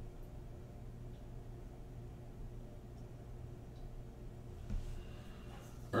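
Quiet room tone with a steady low hum, and one faint soft sound about three-quarters of the way through.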